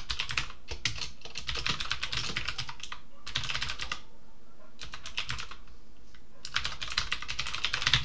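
Typing on a computer keyboard: several runs of rapid keystrokes with short pauses between them.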